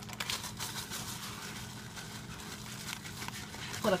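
Clear plastic bag of light brown sugar crinkling as it is handled, with a quick run of crackles in the first second, then softer rustling.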